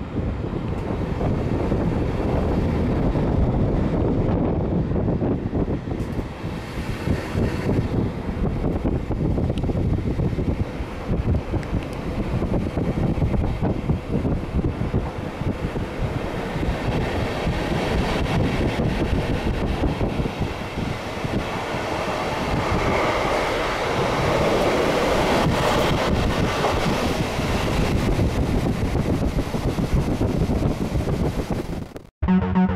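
Running noise of a German n-Wagen (Silberling) passenger coach as the train pulls out of a station and picks up speed: a steady rumble of wheels on rails, growing louder and brighter in its second half.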